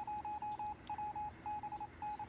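Electronic beeping at one steady pitch, in a quick run of short and longer pulses with gaps: a signal announcing an incoming urgent message.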